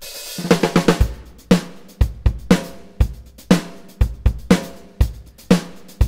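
Superior Drummer 3 virtual acoustic drum kit playing a pattern at 120 bpm: it opens with a cymbal crash and a quick run of hits, then settles into a steady beat with kick and snare alternating every half second under cymbals.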